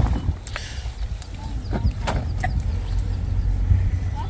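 Chili peppers being picked by hand: a handful of short, sharp snaps and rustles from the plants, over a steady low rumble.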